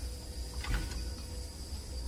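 Restaurant room tone with a steady low hum and a faint high tone, and a brief light clatter of chopsticks and spoon against the dishes a little under a second in.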